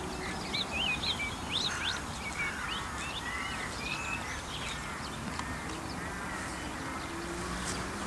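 Wild birds calling and chirping, many short quick notes one after another, over a low steady outdoor rumble.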